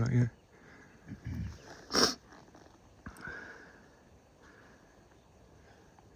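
Hushed human voices murmuring close to the microphone, with one brief sharp noise about two seconds in, then low background quiet.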